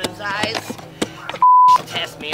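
Acoustic guitar strummed while a man sings. About one and a half seconds in, a loud single-pitch bleep lasting about a third of a second replaces everything else: a censor bleep over a word.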